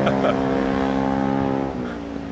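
A motor vehicle engine running steadily at idle, with a steady hum. About three quarters of the way in, the sound changes abruptly and drops a little in level.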